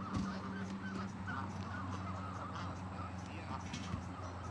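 Canada geese calling, a run of short overlapping honks from the flock, over a steady low hum.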